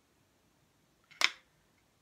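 A paintbrush set down on a metal cookie-sheet paint palette: one short, sharp clatter a little over a second in.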